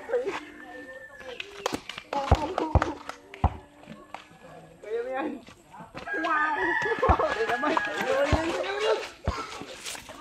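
Several people's voices talking and calling out, busiest in the second half, with a few sharp knocks.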